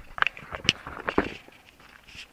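Key working the seat lock of a motorcycle and the seat unlatching: a few sharp clicks and knocks in the first second and a half, then quieter rustling.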